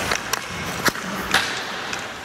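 Ice skate blades scraping on rink ice, with a few sharp clacks of a hockey stick and puck.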